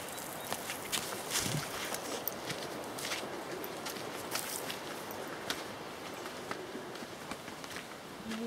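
Footsteps on dry grass and ground, making scattered light crunches and clicks over a faint steady hiss. They are most frequent in the first few seconds.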